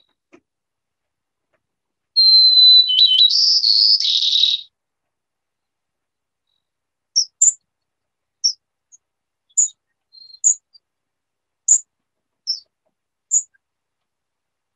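White-crowned sparrow song from a recording: a clear whistled opening note followed by buzzy, trilled phrases, lasting about two and a half seconds. From about seven seconds in comes a series of about eight short, high call notes, roughly a second apart.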